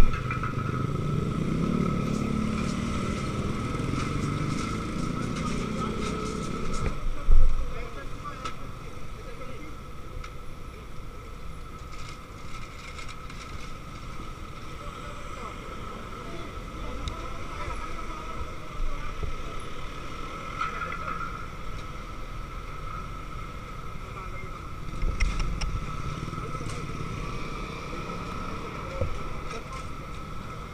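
Road traffic with vehicle engines, a motorcycle among them, and background voices. A louder engine runs for the first seven seconds and ends in a sharp thump, then the traffic drops back, with another vehicle passing near the end.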